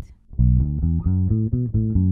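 Electric bass guitar playing a quick run of single plucked notes, about five a second, starting about half a second in after a brief gap: a pentatonic scale run.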